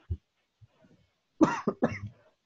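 A man coughs twice in quick succession near the end.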